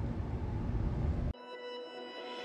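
Car cabin noise while driving, a steady low road and engine rumble, cut off abruptly a little over a second in. Background music with sustained notes takes its place and grows louder.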